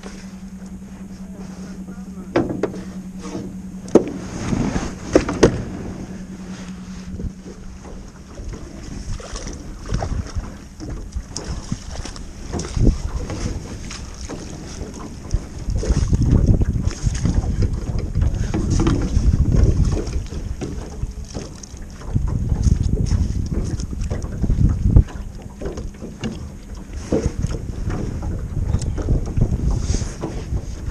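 Wind buffeting the microphone in gusts, loudest about halfway through and again a little later. Scattered knocks and rattles come from the rod and gear being handled in a small jon boat, and a steady low hum runs through the first several seconds.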